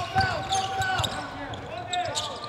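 Basketball dribbled on a hardwood court, with several short thuds, and basketball shoes squeaking on the floor in short squeals.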